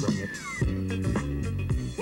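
Background music with a steady beat and bass line, and a couple of short falling high notes sliding down near the start.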